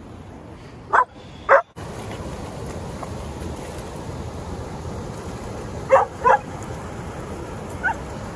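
A dog barking in short pairs: two barks about a second in, two more about six seconds in, and one near the end. Under the barks is a steady rush of shallow river water running over rocks.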